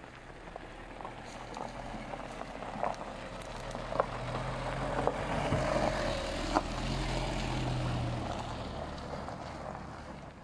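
An SUV drives past on a dirt and gravel track: engine and tyres growing louder for several seconds, loudest just past the middle, then fading, with a few sharp clicks of stones under the tyres.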